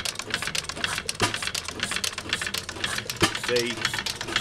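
1911 Tangye AA petrol stationary engine running: a quick, dense clatter of clicks from its valve gear and moving parts, with a heavier beat about every two seconds.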